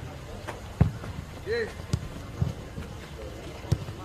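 Sharp thuds of a football being kicked during passing play, four strikes, the loudest about a second in, with faint distant shouts between them.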